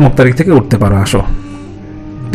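A man talking in Bengali for about a second, then a pause with only soft background music underneath.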